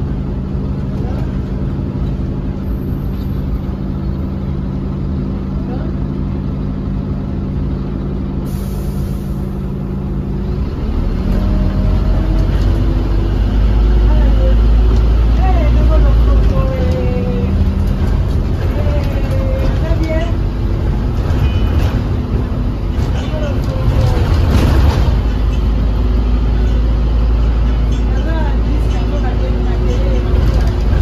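London bus engine heard from inside the passenger saloon, running steadily with a low hum for about ten seconds, then growing louder and deeper as the bus pulls away and drives on, with road rumble underneath.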